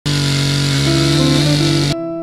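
Petrol chainsaw running at full throttle, cutting through a log with a steady, high engine note. It cuts off abruptly just before the end.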